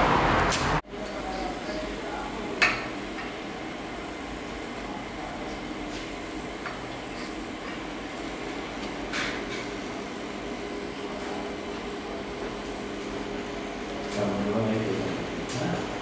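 TIG welding arc on steel pipe, giving a steady low hiss. A louder hiss cuts off abruptly under a second in, and a single sharp click comes about three seconds in. Low voices come in near the end.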